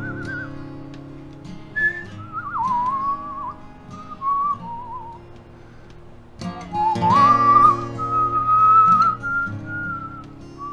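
A man whistling a melody over strummed acoustic guitar chords. The whistled line slides and wavers through short phrases, then rises about seven seconds in to a long held high note, the loudest part.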